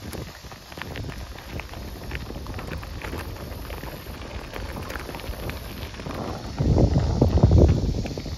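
Bicycle tyres rolling over loose gravel, a steady crunching full of small irregular clicks, with wind noise on the microphone. A louder low rumble comes in for the last second or so.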